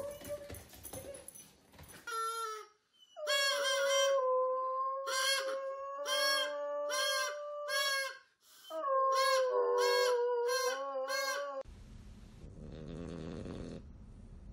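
A hound howling in long held notes while a child blows short repeated notes on a toy harmonica; both are loud and full of overtones. Near the end it gives way to a dog snoring.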